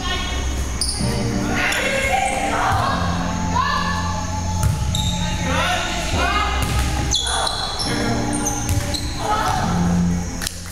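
Volleyballs being struck and bouncing on a hardwood gym floor, echoing in a large hall, with players' voices and music in the background.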